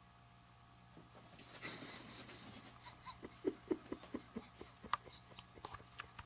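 Pug making a run of short, quick sounds, about four or five a second, starting a few seconds in.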